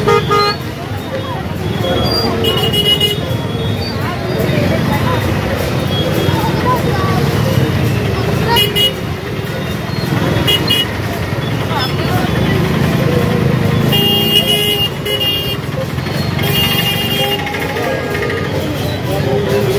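Crowded street: many people's voices chattering, with motorcycle and scooter engines running through the crowd. Short vehicle horn beeps sound several times, about 2.5, 8.5 and 10.5 seconds in and twice more near the end.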